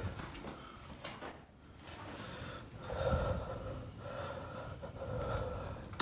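Heavy breathing of the person holding the phone, with a few long breaths about a second apart in the second half, each carrying a faint steady tone.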